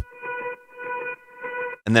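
Octave-up double-tracked electric guitar part playing back: a single high note repeated in straight 16ths, EQ-filtered and drenched in reverb. Its level pumps about twice a second from sidechain compression.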